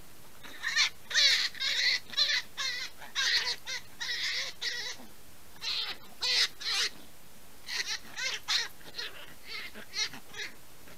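A brown hare caught in a snare, screaming in distress: high-pitched, wavering cries in three bouts with short gaps between them.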